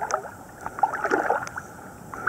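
Water splashing and sloshing in uneven bursts from swimming strokes, heard from a camera held right at the water surface, with the main splash about a second in.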